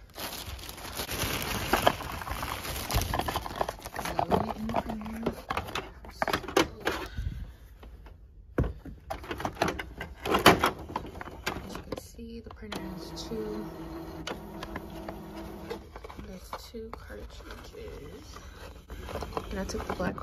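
A thin plastic shopping bag crinkling and rustling as it is handled, with sharp handling clicks. Later a steady mechanical hum whose pitch shifts in steps comes from the open Canon inkjet printer while it runs.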